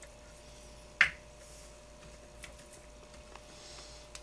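Small handling sounds of hand-tool work on the metal chassis of a 1/5-scale RC car as a screw is snugged up: one sharp click about a second in, then a few faint ticks.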